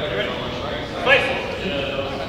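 Indistinct voices talking in a large hall, with one louder voice briefly standing out about a second in.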